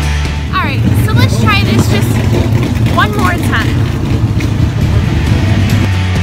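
Race car engines running at a dirt track, a dense rumble throughout. A small child's high voice rises and falls over it in short squeals a few times, with music underneath.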